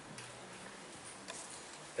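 Faint handling noise of papers being searched through: a few light, scattered clicks and ticks over a quiet room background.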